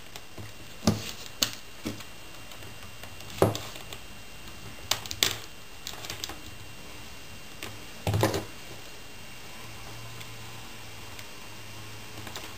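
Irregular small clicks and taps of metal wire and glass beads being handled and wrapped by hand, with a short clatter about eight seconds in.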